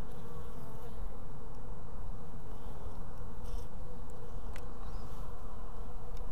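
Honey bees buzzing in a steady, even hum around an opened brood frame.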